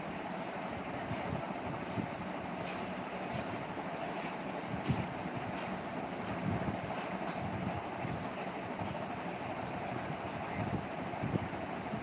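Steady room noise, an even hiss like a fan or air conditioner, with a few faint light taps and small thumps scattered through it.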